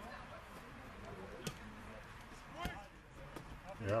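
A football kicked once, a single sharp thud about a second and a half in, followed a little later by a brief shout, with a man starting to speak at the very end.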